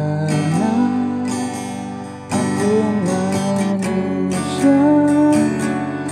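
Acoustic guitar strummed in chords, starting on G, with a man's voice singing the melody along with it.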